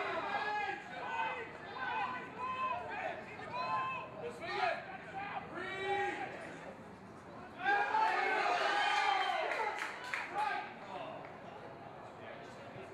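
Men's voices shouting and calling out over one another. A louder stretch of several voices together comes about eight seconds in.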